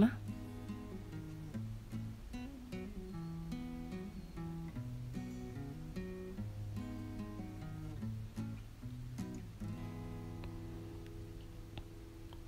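Quiet background music: an acoustic guitar playing a slow run of single notes that change every half second or so.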